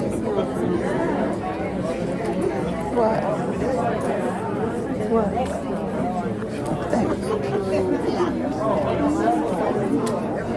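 Crowd chatter: many people talking at once, overlapping indistinct voices with no single voice standing out.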